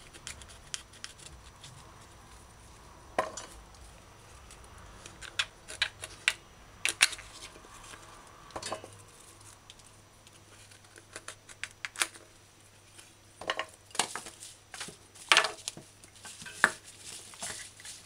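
Kitchen knife prying and scraping coconut meat away from the hard shell of a dry coconut: irregular sharp clicks and knocks of the blade against shell and meat, with pieces set down against a stainless steel pot.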